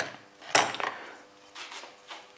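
Metal pieces of a brake-line flaring tool kit clinking and knocking as they are handled and lifted from their case: a few sharp knocks, the loudest about half a second in.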